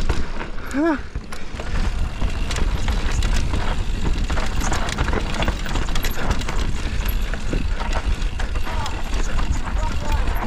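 Mountain bike descending a dirt downhill trail at speed: wind rumble on the mounted camera's microphone, tyres on loose dirt, and the bike's chain and frame rattling over bumps. About a second in there is one short rising-and-falling pitched sound.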